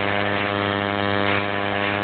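Tattoo machine buzzing steadily while it is held to the skin, tattooing. A low, even, unbroken drone with many overtones.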